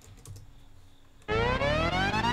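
A few faint clicks in near-quiet, then about a second and a quarter in, karaoke accompaniment music starts with a loud rising synth sweep, many harmonics gliding slowly upward together.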